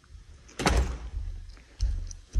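A glass exterior door shuts with one sharp knock about half a second in, followed by a short ring. Dull low thumps follow near the end.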